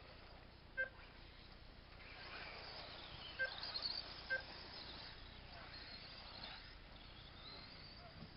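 RC off-road buggies passing close on a grass track, their high whine and hiss rising and falling over the middle few seconds. Three short electronic beeps sound through it: one about a second in, then two more at about three and a half and four and a half seconds.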